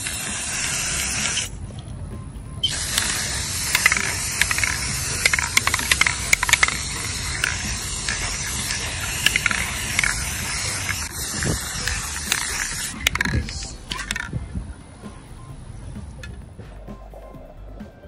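Aerosol spray-paint can hissing in two bursts: a short one of about a second and a half, then, after a brief pause, a long one of about ten seconds.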